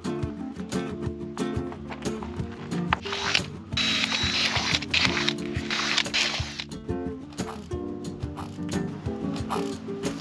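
Background music with a steady beat. About three seconds in, a cordless drill runs in two stretches, a brief one and then one of about three seconds, before stopping.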